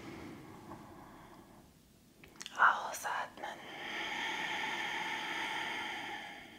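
A woman breathing audibly into a clip-on microphone during a yoga breathing exercise: a soft inhale, a couple of short sharp mouth or breath noises about two and a half seconds in, then a long breathy exhale through the open mouth from about three and a half seconds on.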